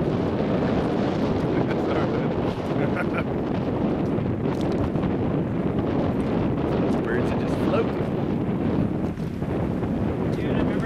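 Steady wind buffeting the camera microphone.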